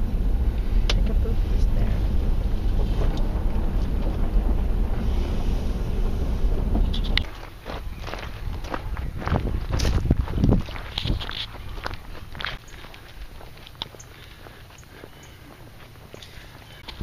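Car driving slowly, its low road and engine rumble heard from inside the cabin. About seven seconds in the rumble cuts off suddenly, leaving a quieter background with scattered short taps and knocks.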